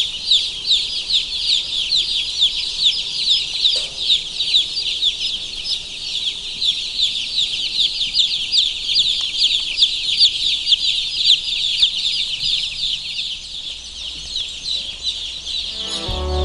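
A large flock of young chicks peeping continuously: a dense chorus of high, short, downward-sliding cheeps.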